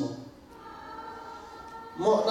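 Faint, sustained choir-like singing in the background, holding steady notes in a pause between spoken sentences.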